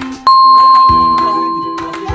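A single bright bell ding, struck about a quarter second in and ringing out as it fades over about a second and a half, over light background music.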